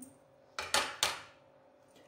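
A saucer set down on a plate: two sharp clinks about half a second apart, the first a little after the start and the second about one second in.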